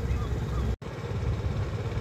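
Low outdoor rumble, broken by a sudden dropout to silence a little under a second in where the footage is cut.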